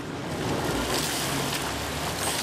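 Motor launch engine running low and steady under a hiss of wind and water noise.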